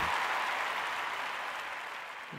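Applause, fading steadily away.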